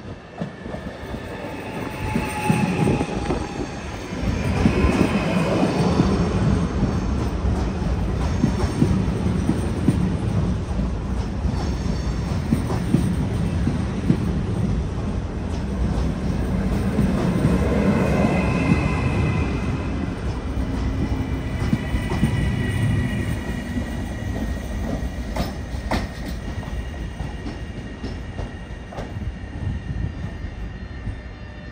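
FS ETR 521 'Rock' double-deck electric multiple unit running past close by. Its wheels and running gear rumble and click over the rails, with thin high wheel squeals now and then. The sound swells over the first few seconds as the train nears, holds while the carriages pass, and eases off near the end.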